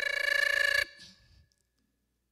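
A woman's voice through a microphone, holding one high, steady note that cuts off just under a second in and fades away.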